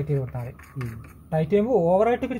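Speech only: a person talking, with a faint steady low hum underneath.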